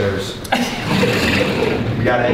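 Indistinct voices of several men talking at once, over rustling and movement noise from about half a second in.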